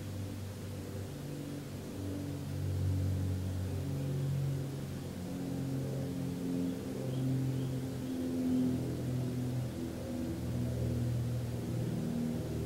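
Soft, low ambient music: slow sustained tones that step to a new pitch every second or two.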